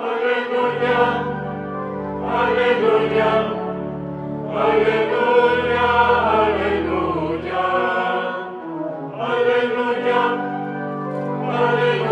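Choir singing a chant-like Alleluia, the acclamation before the Gospel, in several phrases with short breaks between them, over low sustained accompanying notes.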